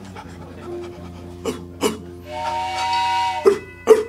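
Dog sound effect for a radio play: short panting breaths, then a long, steady whine for about a second in the middle, then more panting.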